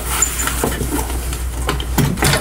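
Soft rustling and a few light knocks as an old guitar case and rags are handled, over a steady low hum.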